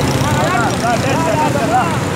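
Motorcycle engine running under way with a steady low rumble, and men's voices talking and calling out over it.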